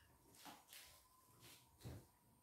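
Near silence in a small room: a few soft, brief sounds of people eating, with a faint steady tone underneath.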